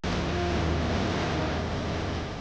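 Road noise of a car convoy driving along a highway: engines and tyres with a strong low rumble. It starts abruptly.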